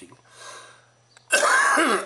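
A man coughs once, loudly and briefly, about a second and a half in, after a faint breath in. The cough is one of several he has made while talking.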